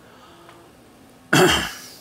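A man clearing his throat once, a short loud cough-like burst about a second and a half in, over faint room tone.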